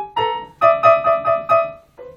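Electronic keyboard with a piano sound playing a short phrase: a single note, then the same note struck five times quickly, about four a second, dying away near the end.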